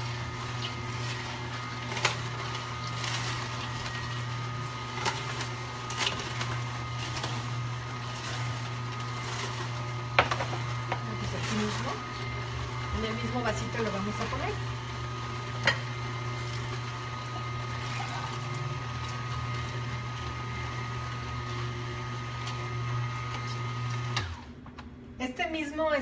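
Cold-press (slow masticating) juicer running with a steady low motor hum and a faint steady whine as it crushes a cucumber, with a few sharp cracks along the way. The motor stops abruptly about two seconds before the end.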